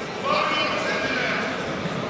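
Several people shouting and calling out at once in a large, echoing hall, with one voice raised above the rest about half a second in.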